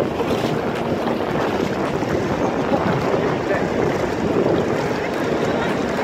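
Steady wind buffeting the microphone over the wash of shallow surf running up the beach.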